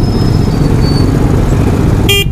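Small engine of a homemade mini car running steadily, heard as a loud low rumble amid street traffic.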